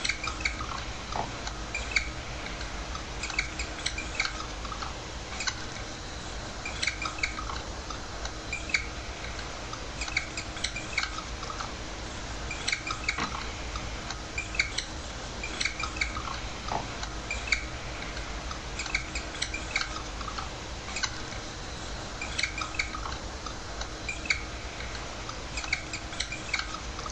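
Felt-tip marker squeaking on a whiteboard in short irregular runs of high squeaks as it draws, over a steady low hum.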